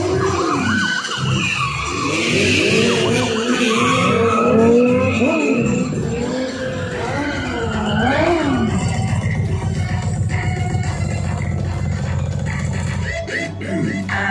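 Police sirens wailing and car tyres skidding over loud show music. From about nine seconds in, an engine is held at steady high revs, stopping just before the end.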